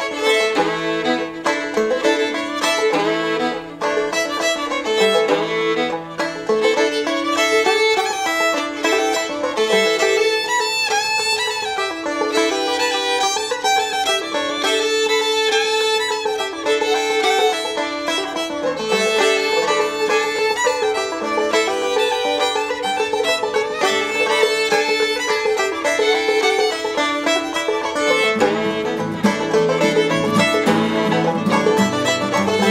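Fiddle and banjo playing an instrumental bluegrass fiddle tune together, the fiddle carrying the melody over the picked banjo.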